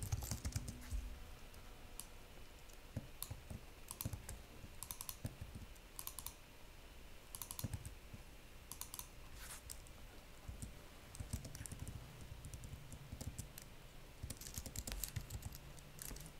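Computer keyboard typing in short, irregular bursts of keystrokes.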